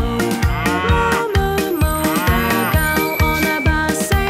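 A cartoon cow mooing twice, each moo rising and then falling in pitch, over upbeat children's music with a steady beat.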